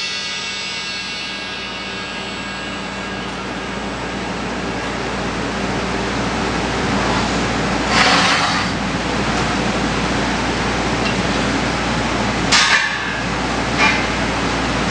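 A crashed cymbal rings and fades away over the first few seconds. Then comes a sharp metallic hit on cymbal brass about halfway through, and two more near the end, over a steady background hiss.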